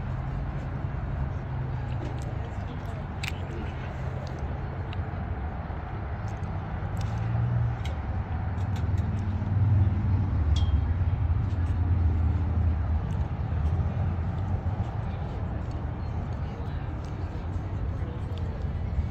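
Indistinct background voices of people talking over a steady low rumble, which grows louder for a few seconds in the middle.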